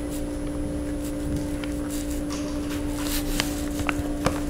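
Soft rustling and a few faint clicks as fingers handle and press a cotton-cord macramé heart onto a burlap-covered board, over a steady low hum.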